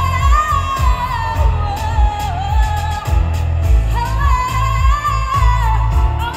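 Live pop song: a woman singing into a microphone over band accompaniment with a heavy, steady beat and bass, heard through the concert's stage loudspeakers.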